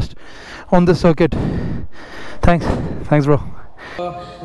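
A man's voice speaking in a few short bursts, with a steady background hiss between them.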